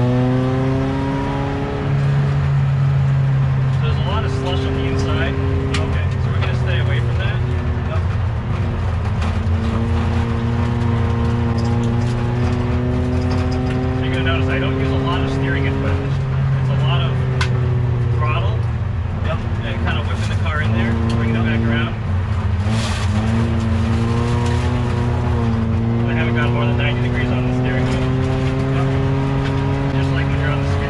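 Race car engine heard inside its caged cabin while being driven on the ice. Its pitch climbs under throttle and drops back several times as the driver lifts and shifts, with clear drops about two, sixteen and twenty-two seconds in.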